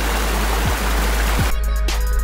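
Steady rushing of a rocky river, with a hip-hop backing track coming in over it: two deep, falling bass-drum hits in the second half, then the full beat with drums and melody near the end.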